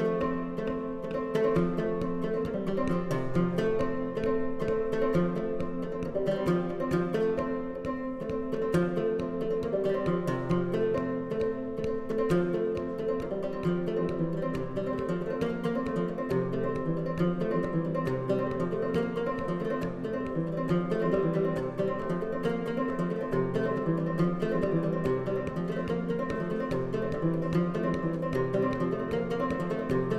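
Solo fretless minstrel-style banjo with a skin head, played as a steady, unbroken plucked tune.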